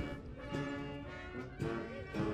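Military wind band of brass and saxophones playing, holding sustained chords that shift to new notes near the end.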